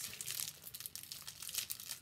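Clear plastic packaging crinkling as a tote bag is lifted and unwrapped: a steady run of soft, irregular crackles.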